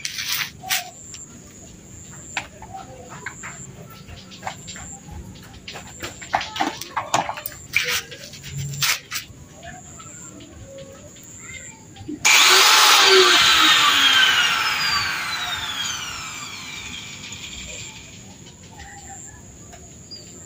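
Corded angle grinder switched on at the wheel arch about twelve seconds in, running loud for a moment, then winding down with a falling whine that fades over about five seconds. It is trimming the inner wheel arch where the wheel hits. Before it come scattered clicks and knocks of tools being handled.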